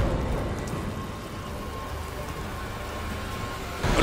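Steady hiss like falling rain, swelling briefly at the start and then settling, with a faint steady tone underneath. A sudden loud sound breaks in just before the end.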